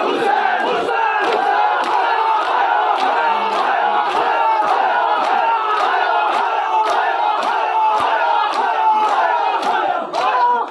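A large crowd of Shia mourners chanting together, with the rhythmic slaps of matam (hand-on-chest beating) about twice a second.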